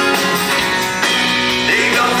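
Live band music led by a strummed acoustic guitar, chords struck at a steady pulse, in a theatre.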